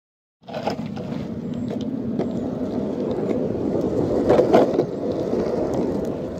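Skateboard wheels rolling over pavement: a steady rumble that starts about half a second in, with scattered light clicks.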